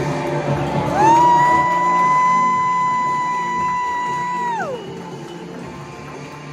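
Show music with a single voice holding one long, high 'woo', sliding up into it about a second in, holding one steady pitch and dropping away near the end.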